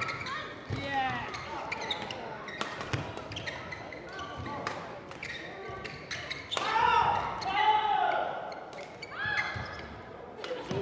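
A badminton rally: rackets strike the shuttlecock again and again at irregular intervals, and shoes squeak on the court floor, busiest about two-thirds of the way through.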